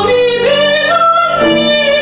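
A woman singing solo with upright piano accompaniment, holding long notes that step up and down in pitch.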